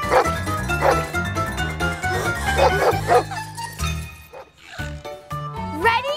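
A cartoon dog barking several times in quick succession over lively background music, the barks falling in the first three seconds or so; the music carries on alone and gets quieter after about four seconds.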